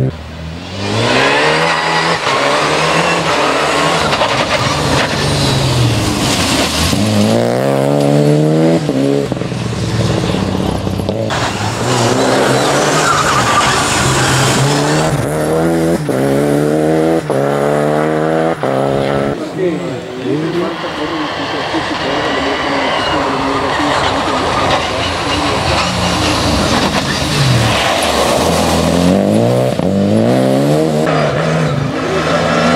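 Renault Clio Rally5 rally car's 1.3-litre turbocharged four-cylinder engine revving hard through the gears on a special stage, its pitch climbing and dropping back at each gear change, several runs in a row as the car accelerates out of corners.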